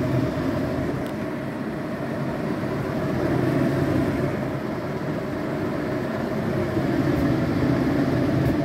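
Hauslane UC-PS18-30 under-cabinet range hood's twin blower fans running, a steady airy whoosh with a low hum, strong enough to hold a paper towel against the grate. The owner doubts it is moving anywhere near its rated 500 CFM, going by its low power draw.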